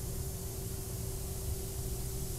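Steady hiss with a faint, even hum underneath: the background noise of a CNC stone-router shop, with no distinct mechanical event.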